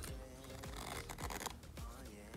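The small gold-tone metal zipper of a Louis Vuitton key pouch being slid open, a soft scratchy rasp, with quiet background music under it.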